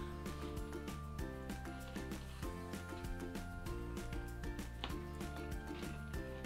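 Background music with a steady beat, played quietly.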